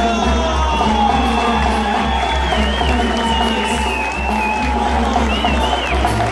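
A live Mexican banda (brass band) playing, with a deep tuba-like bass line under a high melody that breaks into quick trills twice.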